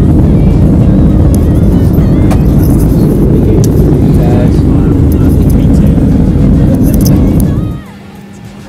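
Loud, steady low roar of an airliner cabin in flight: jet engine and airflow noise. It starts suddenly and cuts off shortly before the end.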